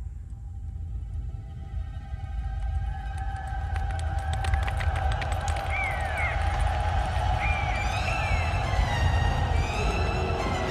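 Animated-film soundtrack: a deep rumble that grows steadily louder, the sound of an approaching wildebeest stampede, under tense orchestral music, with a patter of small rattling clicks near the middle.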